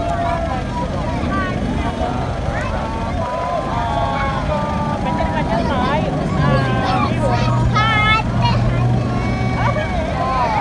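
Several voices of a crowd of spectators talking and calling out over a continuous low rumble. A steady low hum comes in about six and a half seconds in.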